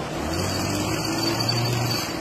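An engine revving, its low tone rising slightly in pitch and stopping suddenly, over a steady rushing noise of a mudslide of mud and water flowing into a flooded pit.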